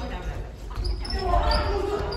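Badminton players' footfalls thudding on a wooden gym floor, with short high shoe squeaks and a sharp knock at the start. Voices call out from about a second in.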